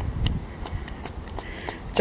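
Plastic pump-spray bottle of hand sanitizer being pressed, with several small clicks and a brief faint spray hiss near the end, over low wind rumble on the microphone.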